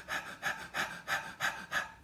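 A man panting on purpose: quick, shallow breaths through an open mouth, about three a second, imitating shallow rapid breathing.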